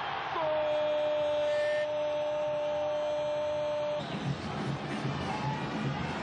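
Stadium crowd noise just after a goal, with one steady held horn-like tone over it for about three and a half seconds. About four seconds in, the sound changes suddenly to rougher, pulsing crowd noise.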